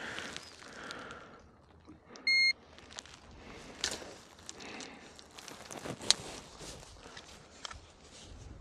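A handheld digital fish scale gives one short, high beep about two seconds in while a bass is being weighed on it. Scattered light clicks and rustling come from handling the fish and the scale.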